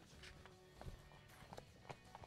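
Faint, irregular footsteps of shoes hurrying down tiled steps, a few light taps over quiet background music.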